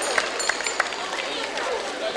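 Outdoor crowd of adults and children chattering at once, with no single voice standing out.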